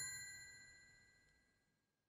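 The ringing tail of a bell-like chime from an end-card jingle, several high tones fading away over the first second, then silence.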